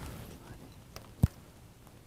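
A single sharp mechanical click a little over a second in, from the Libec fluid tripod head as the camera and head are handled during balancing. A couple of fainter ticks come around it, over quiet room tone.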